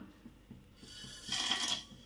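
Whole spices (fennel seeds, cardamom pods, cinnamon sticks, cloves) tipped off a steel plate into an aluminium cooking pot, landing in one brief scatter about one and a half seconds in.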